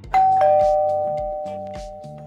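A two-note ding-dong chime, high note then lower note, rings out loudly and slowly fades, over background music with a light steady beat.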